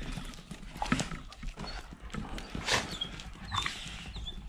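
Belgian Malinois dogs play-fighting: scattered short vocal noises and scuffles come at irregular moments.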